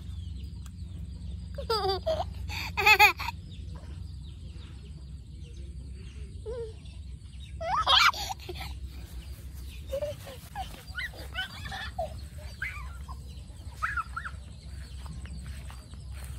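Chickens clucking and squawking in short, scattered calls, the loudest about three and eight seconds in, over a steady low rumble.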